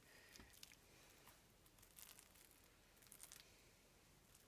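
Near silence: room tone with a few faint, brief rustles as hands lift and turn over a sheet of dough.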